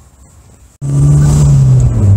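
Toyota MR2's engine heard from inside the cabin while driving: a loud, steady, low engine note that cuts in suddenly about a second in, its pitch dropping slightly near the end.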